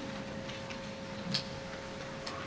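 Applause dying away to a few scattered, sparse claps over a faint steady hum.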